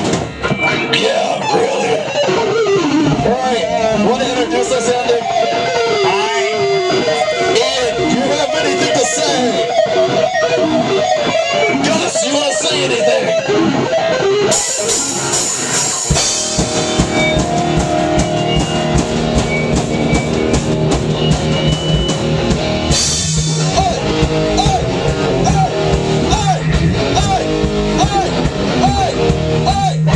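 Live rock band playing loud in a small room: distorted electric guitars and drum kit. The first half is loose guitar playing with bending, wavering notes, and from about halfway the full band plays together in a steady, repeating riff.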